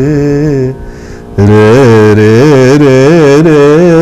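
Male voice singing phrases of the Carnatic raga Kalyani, the notes sliding and oscillating in gamakas. There is a short break about a second in, then the singing comes back louder with quick, wavering ornaments.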